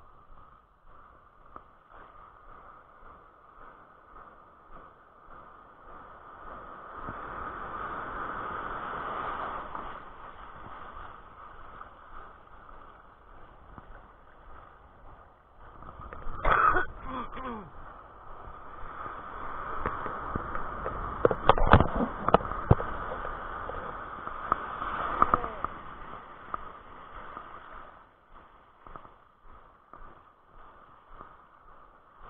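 Surf washing and swirling around the angler, muffled, swelling twice as waves surge in. Several sharp knocks stand out, one group about halfway through and more a few seconds later.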